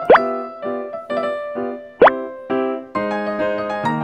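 Light children's background music on keyboard, with two quick rising 'plop' sound effects about two seconds apart.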